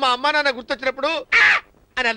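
A person's voice making strained, wordless vocal sounds, with a loud, harsh burst about one and a half seconds in.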